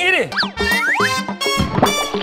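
Cartoon-style comedy sound effects: several quick pitch slides, rising and falling, over background music.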